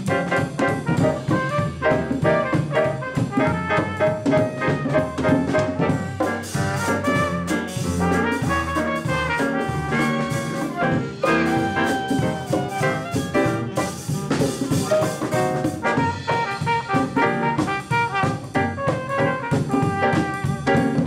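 A jazz big band playing: trumpets, trombones and saxophones over grand piano, upright bass and drum kit, with cymbals busier from about a third of the way in.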